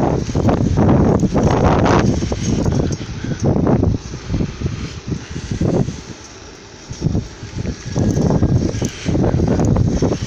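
Wind buffeting the microphone in loud, irregular gusts of low rumbling noise, easing off briefly a little past the middle.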